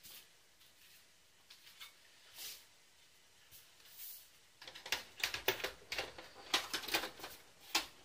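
Dell OptiPlex 330 side cover being lowered onto the case and fitted shut: a few faint clicks at first, then from just past halfway a rapid run of sharp clicks and rattles as the cover meets the chassis.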